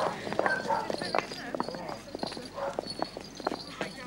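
A group of people walking and talking quietly: a run of sharp, irregular clicks and clacks, with indistinct talk among them.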